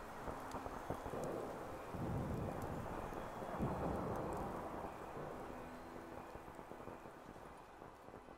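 Night wind ambience: a low gust swells about two seconds in, then the sound gradually fades out.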